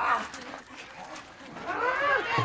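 Shouted battle cries from a fight: a cry trails off at the start, there is a quieter lull, and another yell rises near the end.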